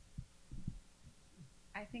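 A few soft, low thumps of a handheld microphone being handled and lifted toward the mouth, then a woman starting to speak near the end.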